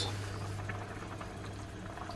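Pot of kimchi jjigae simmering on the stove: faint, irregular bubbling and popping over a steady low hum.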